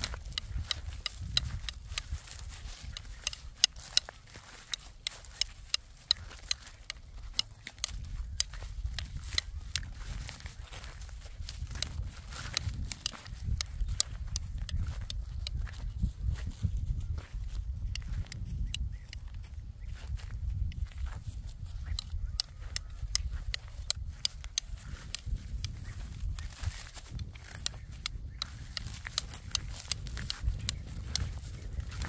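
Footsteps crunching through dry crop stubble: many small crackles and snaps scattered throughout, over a steady low rumble.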